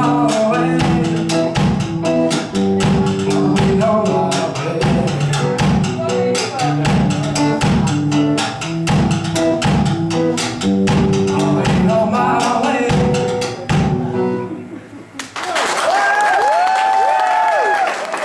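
Live rock band with drum kit and electric guitars playing a song's final bars, which stop suddenly about fourteen seconds in. A moment later the audience applauds.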